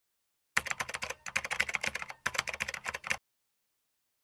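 Typing sound effect: rapid keyboard key clicks in three quick runs, starting about half a second in and stopping short of the end.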